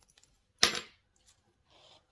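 Small hard plastic model-kit part pushed into place by hand: one sharp click about half a second in, after a few faint ticks of plastic parts being handled.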